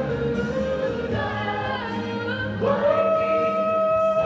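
Mixed show choir singing a pop song in harmony. About two and a half seconds in, a high note slides up and is held as the singing gets louder.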